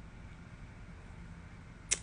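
Quiet room tone: a faint, steady low background hum in a pause between words, with a woman's voice starting again right at the end.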